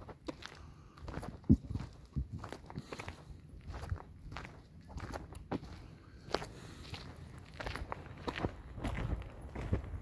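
Footsteps walking on a forest trail: a string of short, uneven steps.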